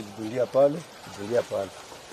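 Speech only: two short, quiet spoken phrases from a voice, with a low background hiss between them.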